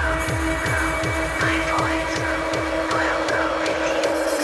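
Hardcore industrial techno at 160 BPM: a kick drum that drops in pitch on every beat, about two and a half times a second, under held synth notes and repeating rising-and-falling synth sweeps.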